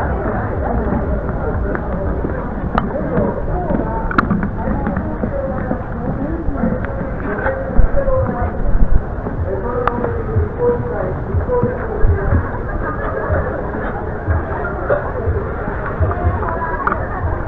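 A crowd of people chattering around the microphone, many voices overlapping with no clear words, over a low rumble, with a few sharp clicks.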